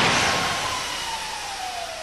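Aftermath of a Pontiac Trans Sport minivan's frontal offset crash test into a barrier: the loud impact noise dies away steadily, with a whine that falls slowly in pitch.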